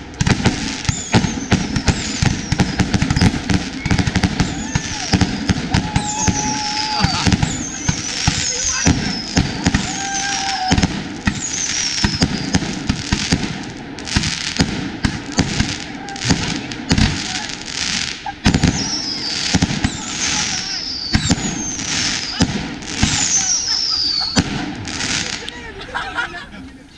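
A consumer fireworks cake firing a long, rapid string of launches and aerial bangs. Many shots whistle with a falling pitch as they go up.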